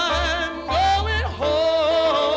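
Male gospel singer's voice through a microphone, singing long melismatic notes with wide vibrato that glide up and down, with a short break about one and a half seconds in before a new held note.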